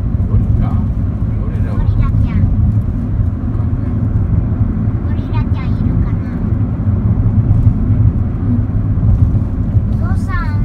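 Steady low rumble of a moving car, engine and road noise heard from inside the cabin. Brief snatches of a person's voice come through about a second or two in and again around five seconds in.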